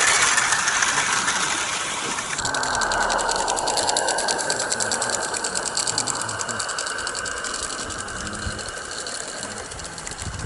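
Small garden-railway steam train running past on its track: a loud rattle of wheels for the first couple of seconds, then a rapid, even ticking of wheels on the rails that slowly fades as the train moves away.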